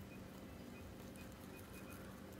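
A Netherland Dwarf rabbit chewing bok choy: faint, crisp crunching with a few small clicks near the end.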